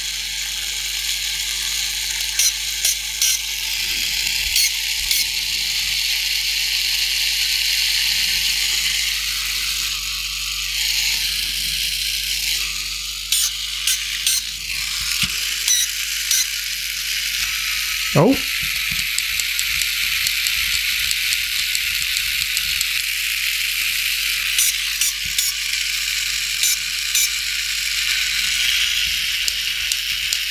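Tomy Dingbot toy robot's small electric motor and plastic gearbox running steadily: a whirr with scattered clicks from the gears, which are clogged with fluff and pet hair and, as the owner judges, need a good clean and regreasing. A short falling chirp about two-thirds of the way through.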